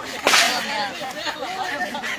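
A single sharp smack of a sepak takraw ball being kicked about a quarter second in, trailing into a short hiss, over people talking and calling in the background.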